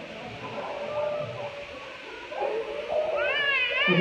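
A murmur of voices, then about three seconds in a high-pitched voice rises in a wavering, wailing cry.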